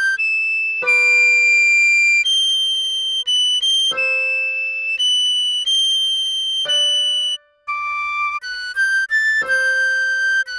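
A recorder melody of high, clean, held notes changing every fraction of a second. Under it, piano chords are struck about every three seconds. The music cuts out briefly about three-quarters of the way through.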